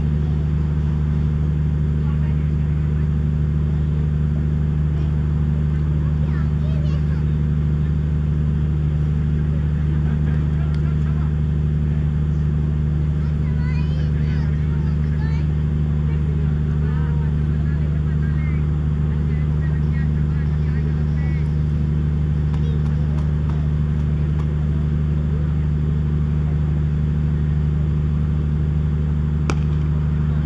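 Steady low-pitched mechanical hum of several even tones that does not change, with faint distant voices now and then.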